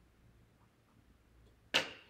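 Quiet room tone, broken near the end by a single short, sharp sound, such as a knock or clink, that dies away within a fraction of a second.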